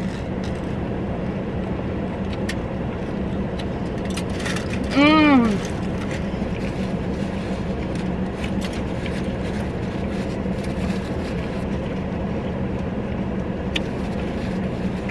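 Steady hum of a running car heard inside the cabin, under the small sounds of someone chewing a gyro. About five seconds in comes one short "mmm" of enjoyment that rises and then falls in pitch.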